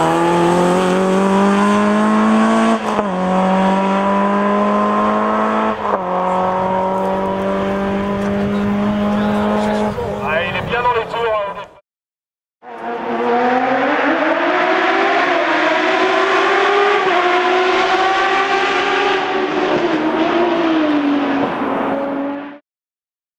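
Renault Clio 2 RS's naturally aspirated four-cylinder engine accelerating hard uphill, its pitch rising through the gears, with two upshifts a few seconds apart, then fading as the car pulls away and cutting off abruptly near the middle. After a short gap, a different sound with a wavering pitch runs for about ten seconds over the channel's end screen and stops suddenly.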